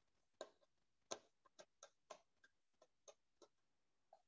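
Near silence with about ten faint, irregular clicks, the loudest about a second in.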